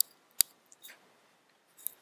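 Clicks at a computer: a click at the start, a sharper, louder one about half a second in, then a few fainter clicks.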